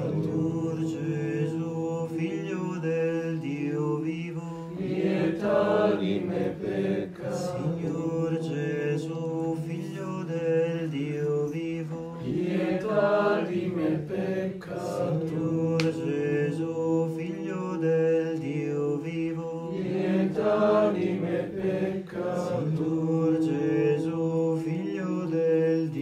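Slow liturgical chanting by low voices, long sustained notes moving over a steady low held tone, with no clearly spoken words.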